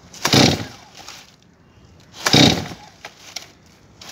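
Two-stroke Stihl MS 250 chainsaw being pull-started with the choke set: two pulls of the starter cord about two seconds apart, each a short whirring rattle, and the engine does not catch.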